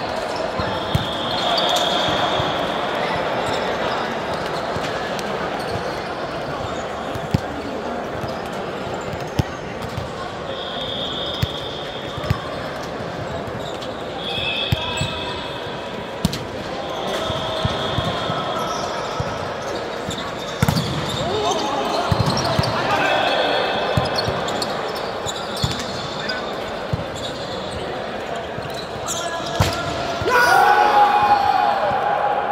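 Indoor volleyball play: a volleyball is struck with sharp smacks every few seconds, with short high sneaker squeaks on the court floor, over the steady chatter and calls of players and spectators in a large gym hall.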